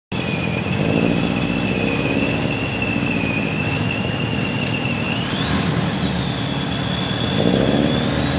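Turbocharged Subaru Impreza STi flat-four with a GT35R turbo running at low revs on the drag strip start line, swelling with light throttle about a second in and again near the end, just before the launch. A thin steady whine sits above the engine sound.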